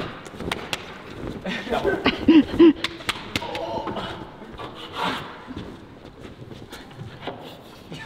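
A long-handled climbing-hold brush scrubbing and knocking against holds on a climbing wall, with scattered sharp taps. Voices sound briefly in the background.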